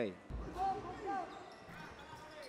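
A basketball bouncing on the court, a low thud about a third of a second in, under faint background voices.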